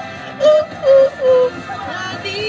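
A woman sings three short, loud notes over recorded pop music, the last note sliding down in pitch.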